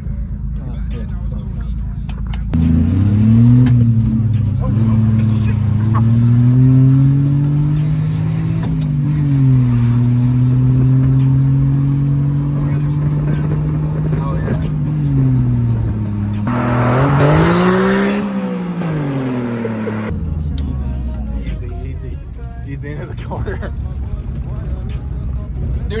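Honda Acty mini truck's small engine heard from inside the cab while driving. The revs climb, drop at a gear change, and hold steady for several seconds. Near the end they rise once more and fall back.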